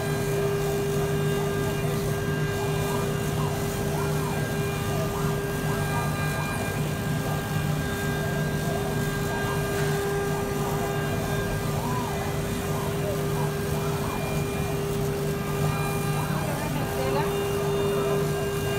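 Laser cutting machine running as it cuts fabric, a steady hum at an unchanging pitch, with faint voices in the background.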